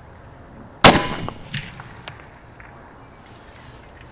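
A single shot from a 10mm Springfield XD(M) Competition pistol firing a full-power 200-grain Speer Gold Dot load, about a second in, with a short echo trailing off and two faint ticks after it.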